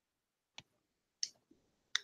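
Three short, faint clicks, spaced a little over half a second apart.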